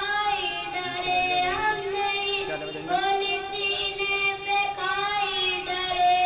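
A boy singing an Urdu nazam into a microphone, his voice gliding and ornamenting the melody in long phrases with short breaths between them. A steady tone is held underneath the voice.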